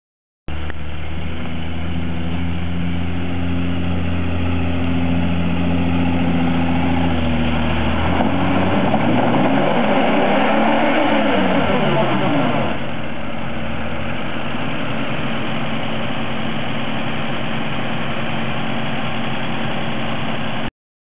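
4WD engine running at a steady idle, then revving up and back down over about five seconds, with added noise on top, as a Nissan Patrol drives up a muddy track; it then settles back to a steady idle.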